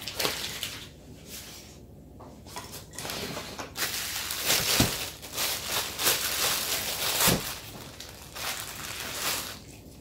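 Clear plastic bag crinkling and rustling in irregular bursts as a lump of green fondant is handled inside it and pulled out.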